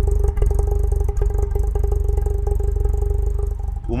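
Tofaş Doğan's four-cylinder engine idling steadily through its Konya exhaust, heard right at the tailpipe as an even, unchanging pulse.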